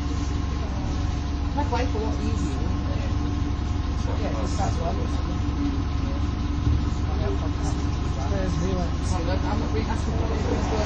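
MAN 18.240 bus's diesel engine running, heard from inside the passenger cabin as a steady low rumble with a steady hum over it. Passengers talk in the background.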